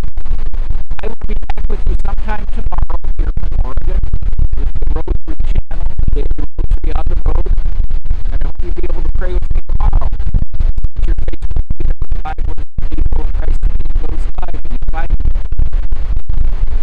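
A man's voice talking, swamped by loud rumbling wind buffeting on the microphone that chops the sound with frequent sudden dropouts and makes the words unintelligible.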